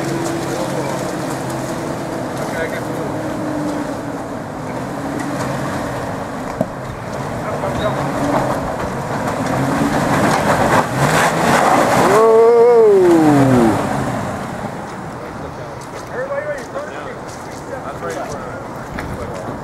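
Nissan Xterra's engine revving under load as the SUV climbs a muddy, rocky off-road trail, growing louder to a peak a little past the middle. Near that peak a long tone slides down in pitch over about a second and a half as the effort eases.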